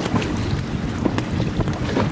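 Wind buffeting the microphone over choppy water, with a steady low rumble of a small boat on the water and a few faint clicks.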